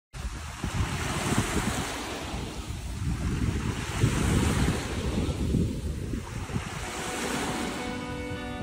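Small waves washing onto a pebble shore, swelling about every three seconds, with wind buffeting the microphone. Music starts just at the end.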